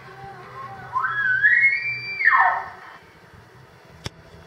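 Recorded bull elk bugle, the app's locator bugle call, played from an Android phone through a 9-volt amplifier and horn loudspeaker. One call climbs from a low note into a high, held whistle, then drops sharply away, lasting about two and a half seconds.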